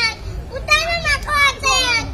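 A young girl's high-pitched voice declaiming loudly into a microphone over a hall PA, in two phrases with a short break between them.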